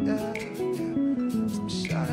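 Live band music led by guitar, with changing chords over a bass line and a sharp drum or cymbal hit about every second and a half.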